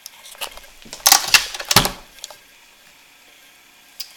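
A short burst of clicking and clattering, loudest from about one to two seconds in, then quiet.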